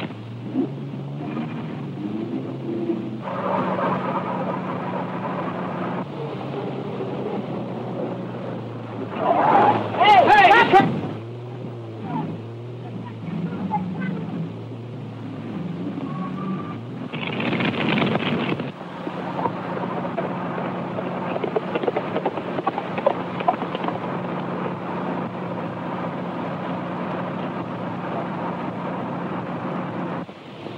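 Engine of an early-1930s open touring car running steadily as it drives, heard on a worn old film soundtrack. Louder bursts with a wavering pitch come about ten seconds in and again about seventeen seconds in.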